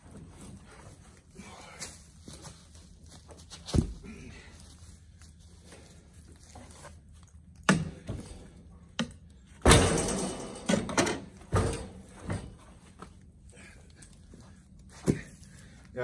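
Heavy oak firewood blocks being handled and dropped out of a pickup truck bed: a few dull wooden thuds and knocks, the loudest a heavy thump about ten seconds in, followed by a cluster of smaller knocks.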